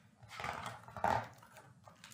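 Pages of a hardcover picture book being handled and turned: two short rustles of paper, the second louder, about a second in.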